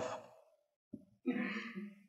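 A man's breathy, lightly voiced sigh lasting under a second, starting a little after a faint click.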